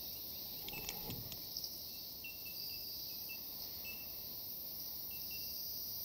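Steady high drone of insects such as crickets, with scattered faint short chirps and a light click about a second in.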